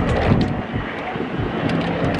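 Plastic bags rustling as they are lifted out of a cardboard box, over a steady background rumble.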